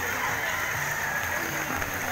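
Steady wash of rain and floodwater being splashed through by people wading, with faint voices in the background.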